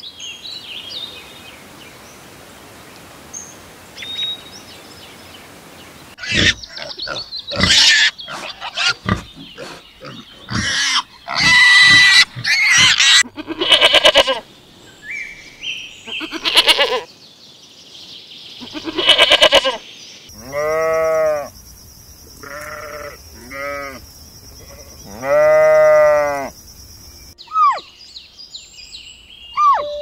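Domestic goat bleating again and again after a few seconds of faint background. The calls are loud, and the last few are drawn out, rising and then falling in pitch.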